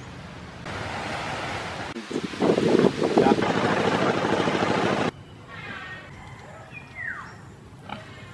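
Domestic pigs grunting under a loud rushing noise that cuts off sharply about five seconds in. After that the grunts and short calls go on more quietly, with one call falling in pitch near the end.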